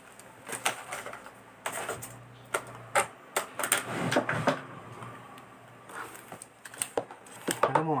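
Faint voices in a small room with scattered light clicks and taps of small objects being handled.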